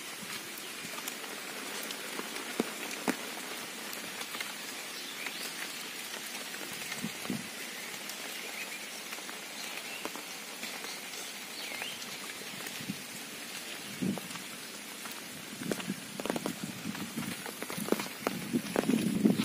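Steady monsoon rain falling, an even hiss dotted with sharper drop taps, with a few louder knocks in the last couple of seconds.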